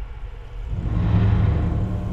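A deep, low rumble that swells up about two-thirds of a second in and then holds steady.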